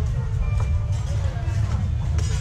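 Open-air market ambience: indistinct voices of vendors and shoppers over a steady low rumble.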